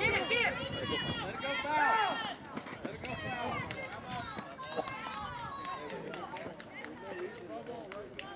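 Several spectators shouting and cheering, 'Go!', loudest in the first two seconds, then tapering off into scattered voices.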